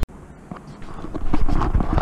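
Handling noise from the camera being picked up and moved: scattered clicks and knocks over a low rumble of wind on the microphone, growing louder about a second in.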